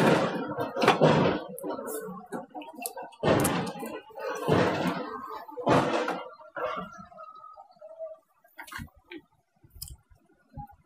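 Men talking, which the speech recogniser did not transcribe, with a few heavy metal knocks from a truck's steering knuckle being handled on its kingpin.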